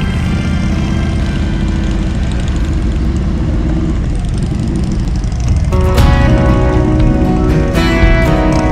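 Several touring motorcycles running as they ride off in a line, with a steady low engine rumble and music over it. The sound gets suddenly louder about five and a half seconds in.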